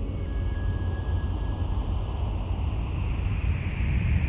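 Low, steady rumbling noise with a faint thin tone for the first couple of seconds and a hiss that swells toward the end: an atmospheric sound-effect bed in a break in the music, with no instruments playing.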